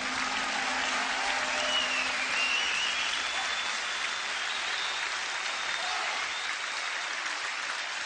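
Theatre audience applauding, with the last low note of the music dying away in the first couple of seconds.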